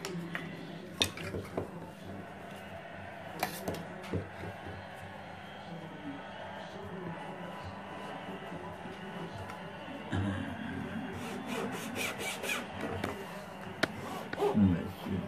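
Small fine-toothed hand saw cutting a thin strip of wood in a wooden miter box, with a few sharp knocks early on as the strip is set in the box, then a quick run of sawing strokes from about ten seconds in.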